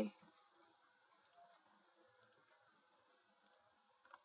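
Near silence: room tone with a few faint, short computer clicks, about a second apart.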